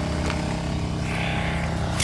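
A motor running steadily: a low, even hum made of several steady tones.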